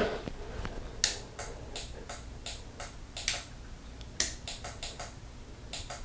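Turn-signal flasher relay of a 1983 BMW R100RS clicking, about three light ticks a second from about a second in, as the newly wired turn signals flash.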